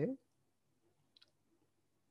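Quiet room tone with one short, faint click about a second in: a computer mouse click.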